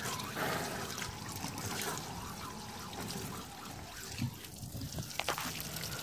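Water from a garden hose splashing onto a weed-mat floor and draining through it, trickling steadily, a little fainter in the second half.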